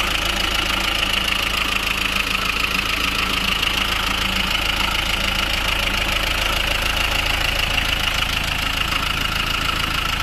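2000 Hyundai Libero one-ton truck's turbocharged, intercooled diesel engine idling steadily.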